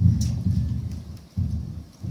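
Microphone handling noise: a low rumble and muffled bumps in two bursts, the second about a second and a half in, as a microphone is moved or passed around.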